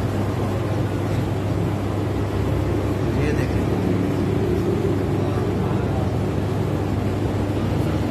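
Steady low electrical hum and rushing noise of running ice cream and slush machines, with faint voices in the background.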